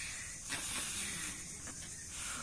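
Children blowing breath into rubber balloons, an airy hissing rush of air that starts about half a second in and eases off near the end.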